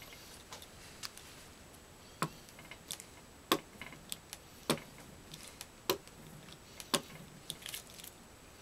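A hand brayer rolled back and forth over a damp aluminium-foil litho plate to ink it, giving a sharp click about once a second at each stroke, with fainter ticks in between.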